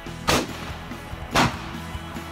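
A scoped bolt-action rifle fired from a bipod: a loud report, then a second loud report about a second later, over background music.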